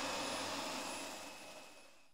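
Dyson vacuum cleaner motor running: a steady rushing hiss with a faint high whine, fading steadily until it is nearly gone at the end.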